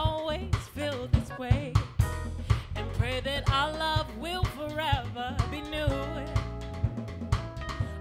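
Live soul band playing: drum kit with a steady snare and bass-drum beat, bass guitar and keyboard, with a woman singing over the band.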